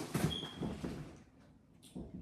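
Light rustling and small knocks of a cardboard box and its packaging being handled, dying away about a second in.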